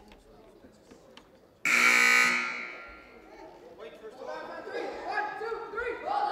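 Basketball scoreboard horn sounding once for about a second during a timeout, a loud buzz whose sound fades away in the gym's echo. Voices talk after it.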